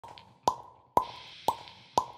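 Four short, sharp pitched clicks, evenly spaced at about two a second, like a steady count-in ahead of the music.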